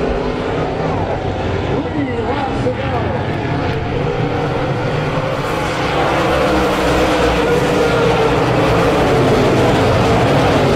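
A field of dirt-track modified race cars running laps, several engines revving together with rising and falling pitch as cars pass, a little louder from about six seconds in.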